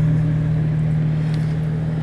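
Steady low hum under a faint hiss of outdoor background noise.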